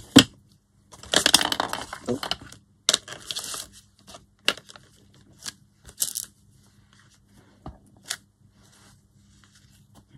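Paper journal pages and a honeycomb stamp being handled on a craft cutting mat: a rustling, sliding stretch of paper about a second in and again near the three-second mark, then a few light, separate taps and clicks.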